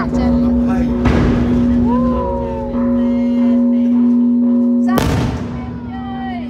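Two aerial firework bursts, a softer bang about a second in and a louder, sharper bang near the end that trails off, over a steady drone of music and people's voices.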